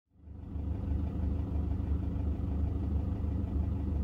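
Low vehicle engine rumble heard from inside the cab, a steady drone with a slight pulsing, fading in over the first half second.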